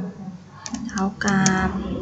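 A few computer keyboard keystrokes clicking in the second half, as an equals sign is typed.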